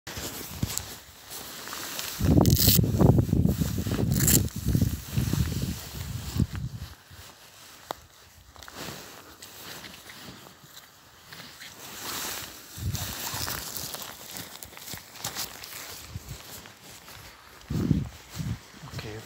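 Bare feet walking on grass, soft swishing steps. A loud low buffeting on the microphone, with a couple of sharp clicks, covers the steps from about two to seven seconds in.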